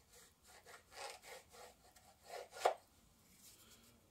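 The edge of a small MDF piece being shaved down by hand with a hand tool: a run of about eight short rubbing strokes, the loudest about two and a half seconds in, stopping near three seconds.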